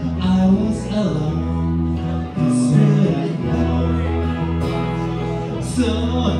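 A small live band playing a song on electric bass and acoustic guitar, the bass holding long notes that change about once a second.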